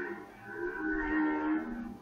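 Two drawn-out animal calls, well below the level of the lecturer's voice. One is tailing off in the first moments, and a second, longer call follows about half a second in and drops in pitch just before it ends.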